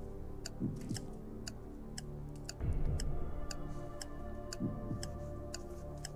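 Quiz-show countdown timer music: a clock-like tick about twice a second over held, sustained chords that swell about two and a half seconds in.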